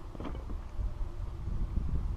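Wind buffeting the microphone: an uneven low rumble that swells and dips, with a faint click about a quarter second in.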